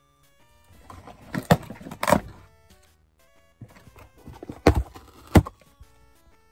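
Packaging being handled and pulled at while he tries to open it: four sharp knocks, two about a second and a half in and two near the end, with quieter crinkling between them. Faint steady music runs underneath.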